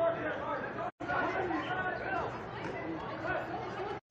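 Overlapping chatter of several people talking at once among spectators, with no single clear voice. The sound drops out completely for an instant about a second in.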